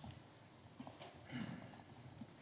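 A few faint knocks and shuffling as a person gets up from a seat at a table, over quiet room tone in a large hall.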